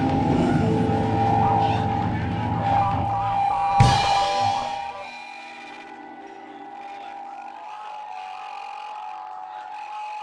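Live rock band with electric guitars and a drum kit finishing a song. The full band plays and lands on one final hit about four seconds in. Then the sound drops to a quieter held tone that rings on.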